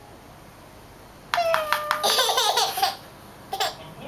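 A baby laughing: a quiet start, then one loud run of laughter lasting about a second and a half, and a short laugh again near the end.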